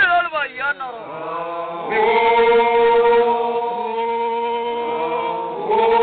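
Samburu traditional group song sung by voices alone: sliding, broken vocal phrases in the first second or so, then one long chord held steady from about two seconds in, with the voices rising again just before the end.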